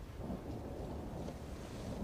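Distant thunder rumbling low and steady, with a faint hiss of rain: storm ambience under a pause in dialogue.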